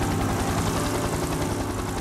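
A motor engine drones steadily with a fast, low throb.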